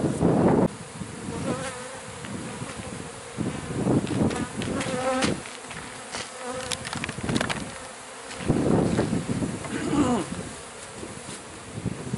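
Many honeybees flying close around the microphone, their buzzing swelling and fading as bees pass, from a colony stirred up by having its comb cut out of a wall. A brief louder noise comes right at the start.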